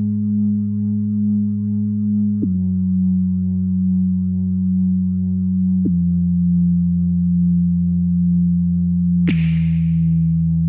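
Electronic music: a sustained low synthesizer drone that steps down in pitch twice, about every three seconds. Near the end a noisy, hissing hit comes in with the next lower note.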